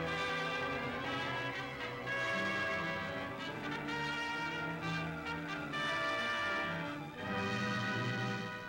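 Orchestral soundtrack music led by brass, playing a run of sustained, held chords that change every second or so.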